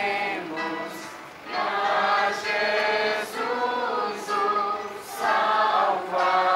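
A choir singing a hymn in long sung phrases, with brief dips between them.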